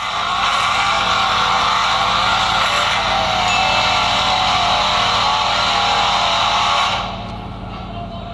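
Car tyres screeching in wheelspin with the engine running hard, loud and steady for about seven seconds, then dropping away.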